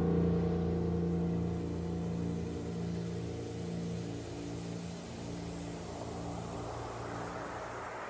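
Grand piano's final chord ringing out and slowly dying away, held by the sustain pedal. A rising rush of noise swells underneath over the last few seconds.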